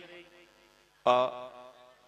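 A man's voice over a public-address system: a pause, then about a second in one drawn-out, steady-pitched syllable that fades away.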